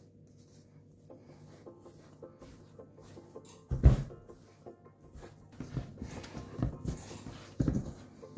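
Quiet background music under hands kneading stiff dough in a stainless steel bowl, with dull thumps about four seconds in and near the end.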